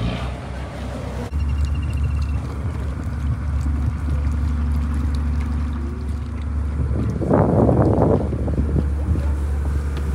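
Low steady drone of a cruise boat's engine heard from on board, with wind on the microphone; the drone starts after a cut about a second in. A brief louder burst of sound comes about seven seconds in.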